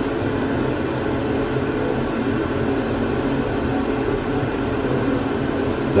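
A steady mechanical whirring hum with an even hiss, unchanging in level.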